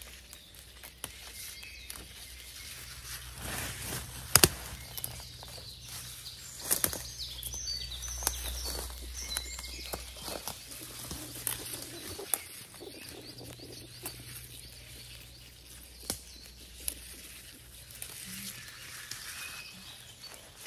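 Wild garlic (ramsons) stems snapping and leaves rustling as they are picked by hand, with short sharp snaps every second or so, the loudest about four seconds in. Birds chirp faintly in the background.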